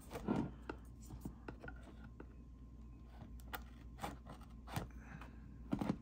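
Faint, scattered clicks and scrapes, about one a second, of hands handling shrink-wrapped cardboard trading-card boxes. Near the end a knife scrapes on the plastic wrap.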